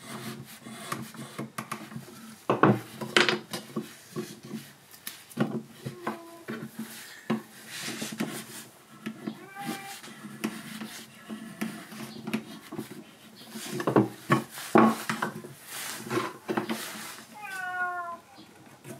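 Chisel paring shavings off a wooden spoon blank: a run of irregular scraping cuts, heaviest about three seconds in and again about fourteen seconds in. A few short pitched calls sound over the cutting, one falling in pitch near the end.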